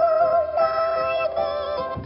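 Music: a voice-like melody holding long, slightly wavering notes over soft sustained tones, with no drums.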